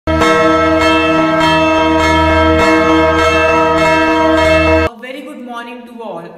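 A bell struck over and over, less than a second apart, each stroke ringing on into the next. The ringing is loud and steady, then cuts off suddenly about five seconds in.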